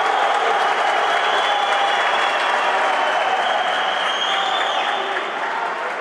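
Crowd in a sports hall applauding, a steady dense clapping that eases slightly near the end.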